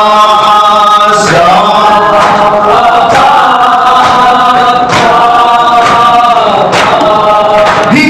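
A group of male voices chanting a melodic devotional chant in unison, with long held notes, marked by sharp beats roughly once a second.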